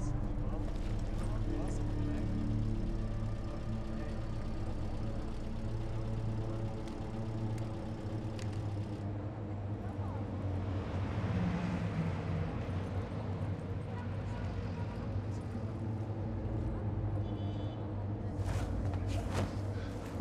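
Film soundtrack of a tense street scene: a steady low hum with traffic and vehicle engine noise under it, a swell of noise about ten seconds in, and a few sharp knocks near the end.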